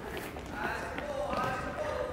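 Faint voices with light touches of a soccer ball and running footsteps on a wooden gym floor.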